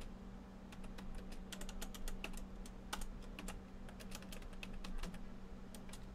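Typing on a computer keyboard: irregular keystroke clicks, several a second, over a steady low hum.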